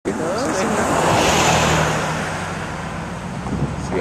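A car going past on the street, its noise swelling to its loudest about a second and a half in and then easing off, over a low steady hum, with a brief voice near the start.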